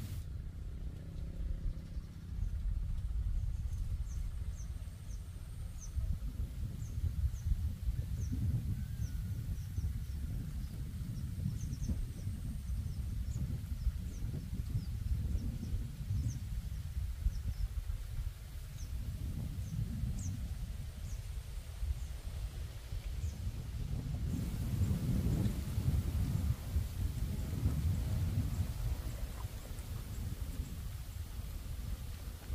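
Wind rumbling on the microphone, with scattered short high chirps of small birds that die out after about twenty seconds.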